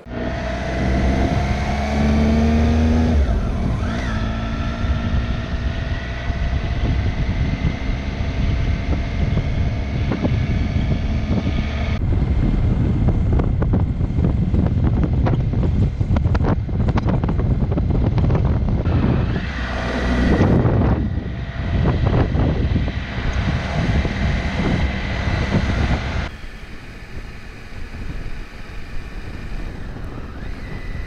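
Triumph motorcycle under way, its engine note rising as it pulls away in the first few seconds, a break at a gear change, then steady running, under heavy wind noise on the microphone. The sound gets quieter near the end.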